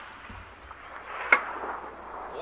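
Echo of a Barrett M82A1 rifle shot dying away across open ground, then a single sharp metallic clank about a second and a half in.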